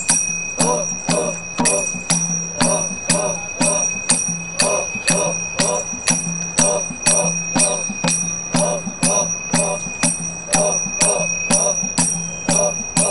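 Folk dance music: a drum and ringing metal percussion struck in a steady beat about twice a second, with voices chanting in time to it.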